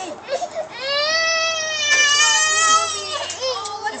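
A toddler crying: one long, high wail of about two and a half seconds that starts just under a second in and rises at first before holding.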